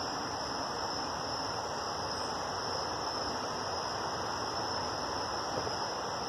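Crickets chirring in a steady, unbroken chorus over a low hiss.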